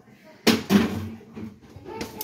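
A sudden knock or clatter about half a second in, with a second, lighter knock just after it: something being handled or set down in a kitchen.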